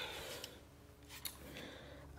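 Quiet handling noise with a few faint, short clicks as a handgun is picked up off the carpet.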